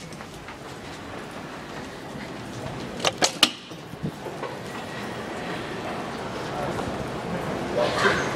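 Footsteps and indistinct voices of a group walking through a building, with a run of three sharp clicks in quick succession about three seconds in and a smaller click a second later.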